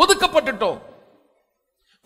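A man preaching in Tamil for a little under a second. His voice fades out, and the rest is silence.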